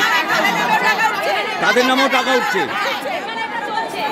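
Several women shouting and talking over one another at once, an angry crowd of voices with no single clear speaker.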